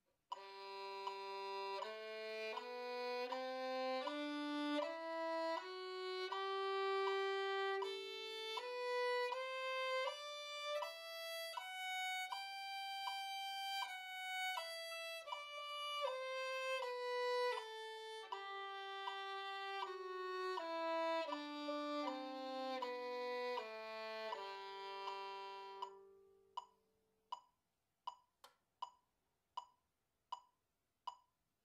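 Solo violin playing the G major scale over two octaves, slurred two notes to a bow, rising from the low G to the top G and back down, ending on a long held tonic about 26 seconds in. Then steady clicks about three-quarters of a second apart, the quaver pulse at 80 beats per minute.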